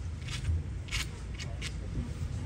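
Four short scraping strokes on a wet shower floor, a few tenths of a second apart, over a low steady background rumble.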